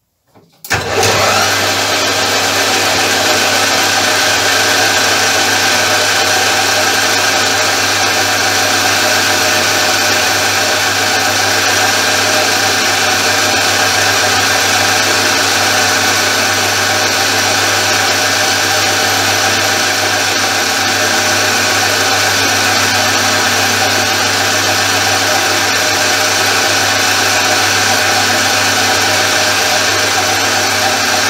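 Benchtop metal lathe switched on about half a second in, then running steadily at a higher spindle speed with a constant motor and gear whine, while a ball-turning radius tool takes the final finishing pass on a rounded workpiece end.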